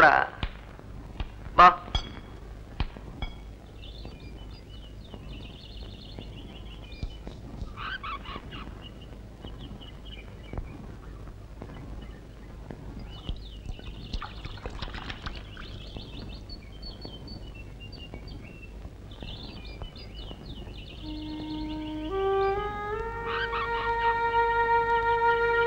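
Birds chirping and twittering in the background, after a few sharp clicks in the first seconds. Near the end, music begins with a rising run of held notes.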